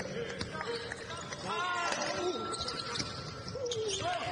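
Basketball being dribbled and bounced on a hardwood court during play, with short high squeaks about one and a half seconds in and players' voices.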